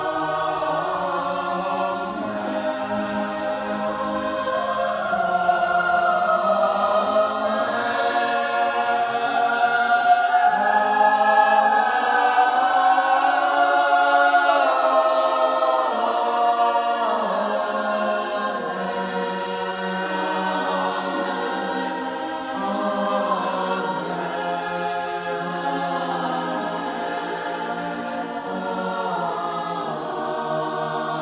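Mixed high school choir of boys and girls singing unaccompanied, in sustained chords that swell loudest about halfway through and ease off again.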